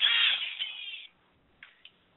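Cell phone ringtone playing, a high electronic melody that fades out and stops about a second in.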